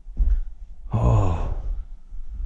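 A person's single wordless vocal sound, about half a second long, about a second in, over a low rumble.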